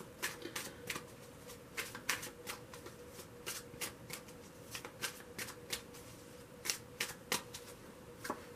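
A deck of tarot cards shuffled by hand: a run of quick, irregular card clicks.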